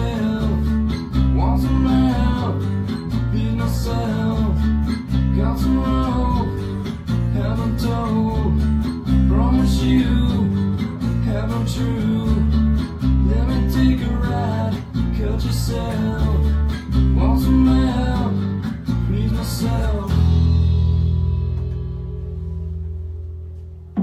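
Acoustic guitar strummed in time with a recorded rock song with bass and vocal, a mid-tempo acoustic number. About two seconds before the end the strumming stops and a low chord is left ringing, fading away.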